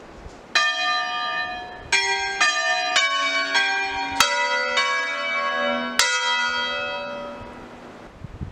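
Church bells of a four-bell ring in B (Si3), swinging and sounding in an uneven sequence of about eight strokes of different pitches, each ringing on and overlapping the next. The ringing dies away near the end.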